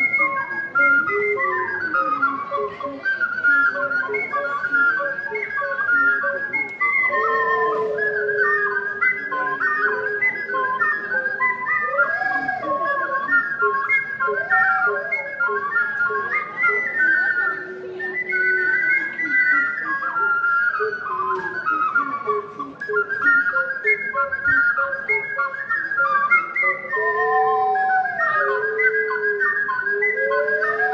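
Ocarina ensemble playing a lively traditional tune in parts: a fast high melody over lower ocarinas holding longer notes, with a few notes in the lower part swooping up and down.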